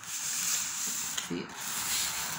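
A tray being slid and turned on a tabletop, a steady scraping rub of its base against the table surface.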